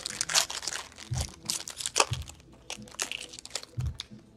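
Foil wrapper of a hockey card pack being torn open and crinkled by hand: a run of crackling rustles, with a few dull knocks as the pack is handled.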